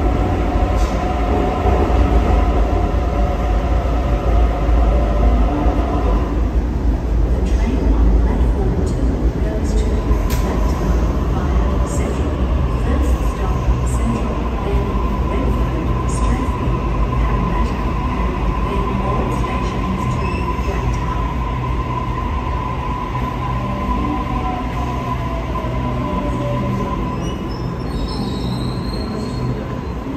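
Sydney Trains double-deck electric trains at an underground station platform. A train runs in with a heavy rumble and a steady motor whine. Later a train moves slowly along the platform with a steady whine, joined in the second half by a tone that falls in pitch as it slows.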